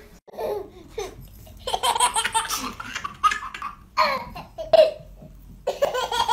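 Laughter in several bursts, with a short pause before a fresh burst near the end.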